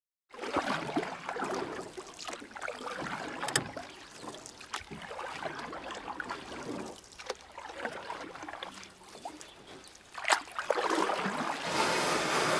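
Canoe on a river: water splashing and lapping around paddles and hull, with a few sharp knocks, growing louder near the end.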